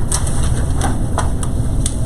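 A steady low room rumble with about five short, light clicks scattered through it.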